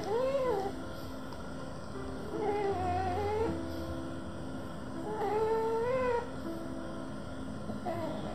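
Boston terrier puppy snoring in its sleep: three drawn-out, high, wavering snores about two and a half seconds apart, the noisy breathing of a short-nosed breed. Soft background music runs underneath.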